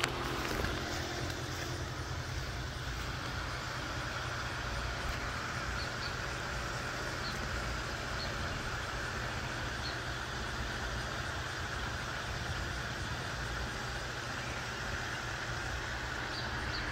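Steady outdoor background noise: a low rumble under an even hiss, with a few faint, short high chirps about halfway through.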